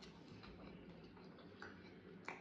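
Faint close-up chewing of a mouthful of mandi rice and meat, with a few soft, separate mouth clicks.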